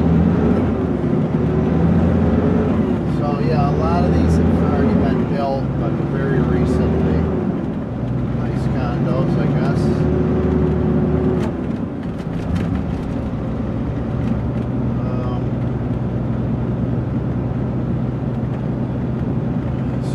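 Heavy truck's diesel engine heard from inside the cab, its pitch stepping up and down through several gear changes as the truck gets moving over the first twelve seconds or so, then running steadily.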